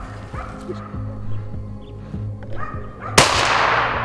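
Finnish spitz barking a few times at a capercaillie up a tree, then about three seconds in a single loud rifle shot from a Blaser D99 drilling in 7x57, with a long fading echo.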